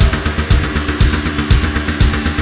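Electronic body music (EBM/industrial): a kick drum on every beat, about two a second, under a pulsing synth bass line. A falling high sweep comes in about a second in.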